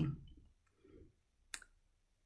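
A woman's voice trails off, then near silence broken by one short, sharp click about one and a half seconds in.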